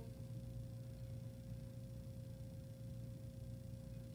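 Quiet room tone: a steady low hum with a faint, thin, steady tone over it, and no other distinct sound.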